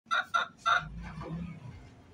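Rooster giving three short clucks in quick succession near the start.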